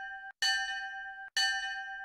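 A bell-like chime sound effect rings repeatedly at the same pitch, a new strike about once a second, each ring cut off short before the next.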